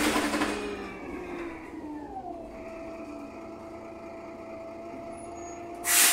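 On board a Wright Pulsar 2 (VDL SB200) single-decker bus: a sharp burst of air hiss at the start, then a whine that falls in pitch over about two seconds and holds a steady tone, and another loud burst of air hiss near the end.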